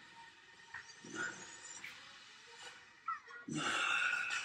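Quiet stretch of a bodyweight exercise: a few soft knocks of hands and bare feet on a rubber mat, and a louder breath near the end.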